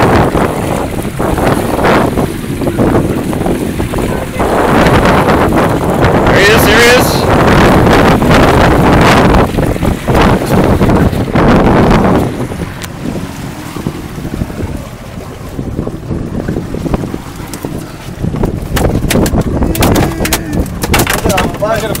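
Wind buffeting the microphone over water rushing along a small outboard-powered boat. It is loud for about the first twelve seconds, then drops to a lower, steadier rush.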